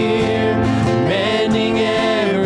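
Live worship band playing a slow song: guitars and keyboard under a woman singing the lead melody in long, held notes.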